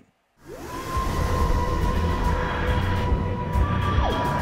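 Opening title sting: music with a dense rushing noise and a steady held tone, swelling in from silence about half a second in and holding level.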